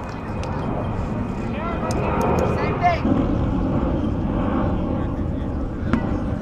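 Players' voices calling out across a playing field over a steady low rumble, with a few shouts about two seconds in.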